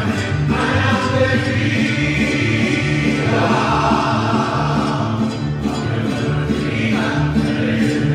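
A mariachi band plays, with men singing together over violins, guitars and harp and a steady bass line.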